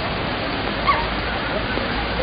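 Wet street ambience in heavy rain: a steady wash of rain and running water with faint distant voices. A single short, high yelp cuts through about a second in.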